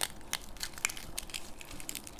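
Crisp green leaf lettuce crinkling and crackling as it is folded and squeezed in the hands, a run of small, sharp crackles.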